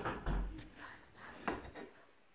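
A knock and scraping as a piece of laminate flooring is handled against the tiled floor, with a second sharp knock about one and a half seconds in.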